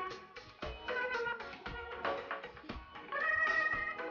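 Accordion playing a lively tune in held chords, over a steady percussion beat.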